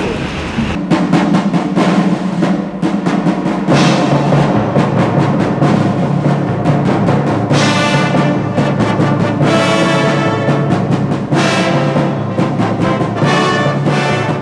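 Military brass band playing a ceremonial march over a steady drumbeat, with fanfare trumpets sounding in repeated short phrases from about seven seconds in.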